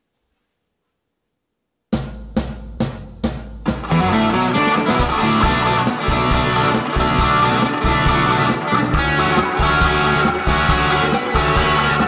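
Silence, then about two seconds in a rock song starts suddenly: a run of sharp drum-and-guitar hits about half a second apart, then a full band groove with drum kit and electric guitar. The guitar is an ESP E-II M-II played through a Boss ME-80 multi-effects unit into a Marshall MG15R amp.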